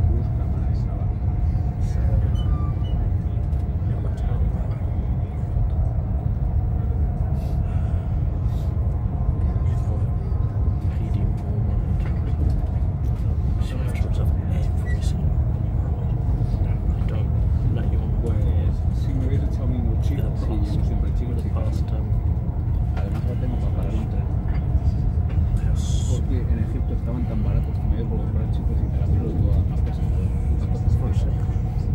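Steady low rumble of a moving train heard from inside a passenger carriage, with faint voices in the background.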